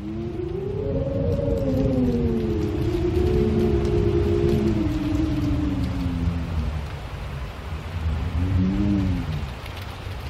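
Storm sound effect: wind howling in long wavering moans that rise and slowly fall, over a steady hiss of rain, with a shorter rising and falling howl near the end.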